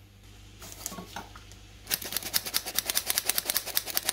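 Hand-operated metal flour sifter working flour into a bowl of batter, giving a fast, even run of clicks that starts about halfway in.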